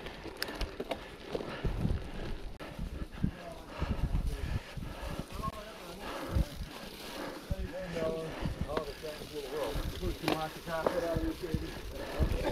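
Gravel bike climbing a steep, rough dirt road covered in fallen leaves: tyres crunching over leaves and rocks, with frequent low bumps and rattles as the bike jolts over the rough surface.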